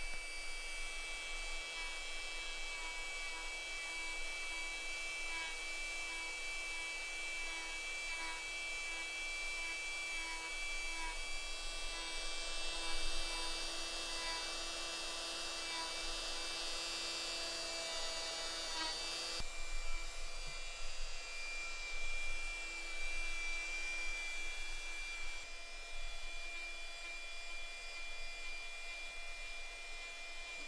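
Small electric rotary carving tool running with a steady whine as it grinds away a knuckle of Japanese maple wood; its tone shifts about two-thirds of the way through.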